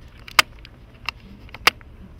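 Two sharp clicks about a second and a quarter apart, with a fainter one between them, over a low steady room hum.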